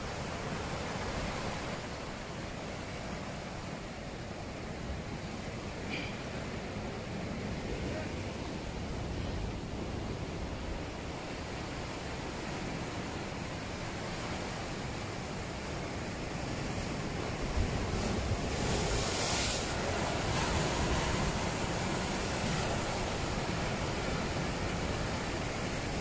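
Ocean surf washing and breaking against rocks, a steady rushing noise with wind on the microphone. It swells louder about two-thirds of the way through.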